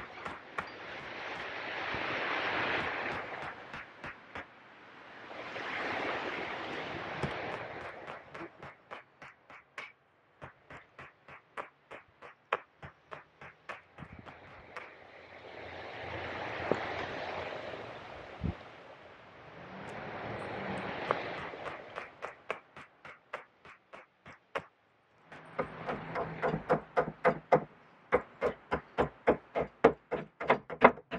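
Small hand axe chopping a block of green birch on a tree stump, its strokes landing as quick knocks about three a second. Four times, a rushing noise swells and fades for a few seconds over the chopping. Near the end the knocks come faster and louder, over a low hum.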